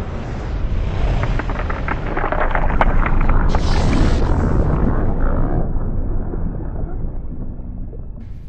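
Deep rumble with a dense run of sharp crackling clicks in the middle, thinning and fading after about five seconds: slowed-down shotgun blast and impact audio under slow-motion footage.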